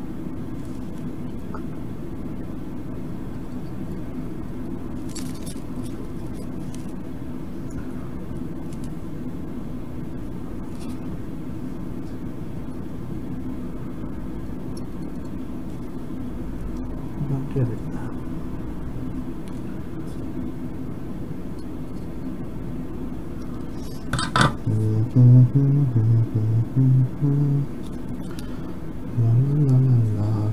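A steady low hum with a few light clicks. About 24 seconds in there is a sharper click, then a man's voice is heard briefly, with no clear words.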